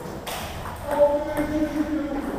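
Table tennis balls clicking off bats and tables in a hard-walled hall, with a sharp loud click about a second in.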